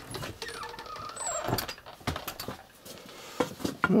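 Irregular crunching footsteps and rustling on a floor of dry leaves and wood chips, made up of many short scattered clicks and knocks, with a faint squeak in the first second.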